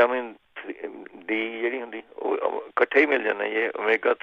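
Speech only: a person talking on without pause, the voice thin and narrow, cut off at top and bottom as over a phone line or radio link.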